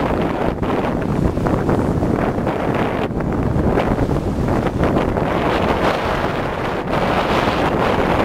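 Steady wind buffeting the microphone aboard a small boat under way, with the boat's running and water noise beneath it.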